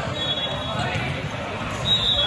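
Indistinct voices echoing around a gymnasium during a volleyball match, with a short high whistle near the end.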